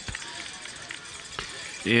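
Faint, steady background ambience of a football stadium crowd with no distinct events. A single short click comes about a second and a half in, and a man's commentary starts again near the end.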